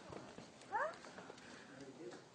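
A voice gives one short questioning "huh?" with rising pitch, against a quiet background.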